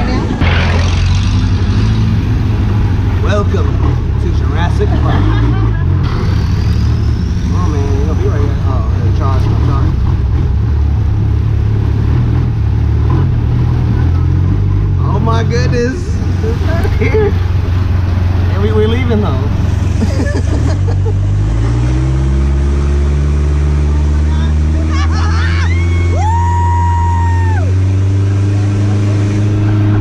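Long-tail boat's engine running loud and steady, then climbing in pitch as it speeds up about two-thirds of the way in.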